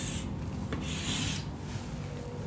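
Chalk drawing lines on a blackboard: a short scratchy stroke right at the start, then a longer one about a second in.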